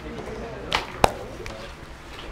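A short rustle, then a single sharp click about a second in.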